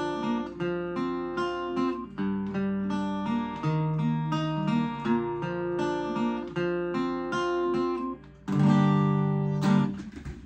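Capoed acoustic guitar fingerpicking a repeating pattern of plucked notes. After a brief gap about eight seconds in, a strummed chord rings out as the closing chord of the song.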